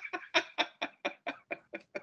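A man laughing hard, in quick, even bursts of about four or five a second.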